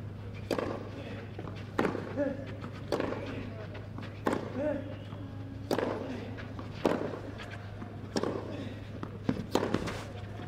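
Tennis rally on clay: racket strings striking the ball about every 1.2 seconds, with a short grunt from one player on every other shot. A quick run of three sharper hits comes near the end, over a steady low hum.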